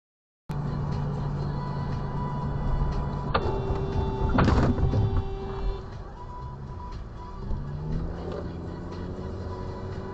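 Car cabin sound from a dashcam: steady engine and road hum, a sharp click about three seconds in followed by a steady horn-like tone lasting about two seconds, and a loud half-second burst of noise, the loudest sound, as a car ahead skids off the road and throws up dust.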